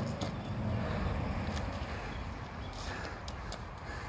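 Cardboard boxes scuffing and scraping over asphalt as a small child drags and carries them, with a few light taps from footsteps, over a low steady rumble of outdoor wind and traffic.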